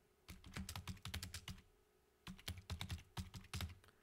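Typing on a computer keyboard: two runs of quick key clicks with a pause of under a second between them.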